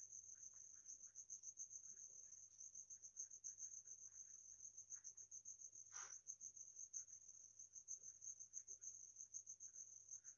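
Near silence with a cricket's steady, rapidly pulsing high-pitched trill, and faint scratching of a ballpoint pen writing on paper, with one brief louder stroke about six seconds in.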